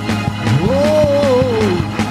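Upbeat church praise-break music with a quick, steady drum beat. About half a second in, a loud long wail sweeps up in pitch, holds, and slides back down.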